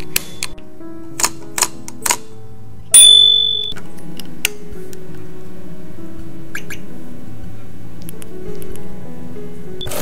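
A handlebar bicycle bell rung once about three seconds in, loud and ringing out briefly. Several sharp clicks come from the handlebar shifter and controls. Background music plays throughout.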